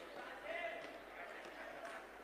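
Faint voices.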